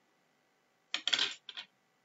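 Plastic highlighter pens clattering on a desk as one is set down and another picked up: a short rattle about a second in, followed by a smaller knock.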